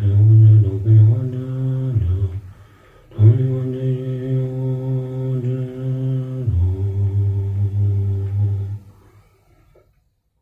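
A deep voice chanting a Buddhist mantra in long, steady held tones. There are three drawn-out phrases with a short pause about two seconds in, and the chant dies away about a second before the end.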